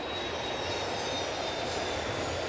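Steady ballpark ambience: an even rush of noise with a faint high whine running through it.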